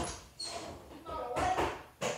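Indistinct kids' voices with no clear words.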